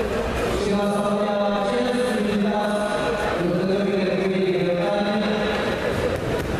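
A man's voice chanting in long drawn-out held notes, several in a row.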